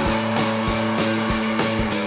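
Live rock band playing, with electric guitars and bass holding chords over a steady drum beat of three to four hits a second.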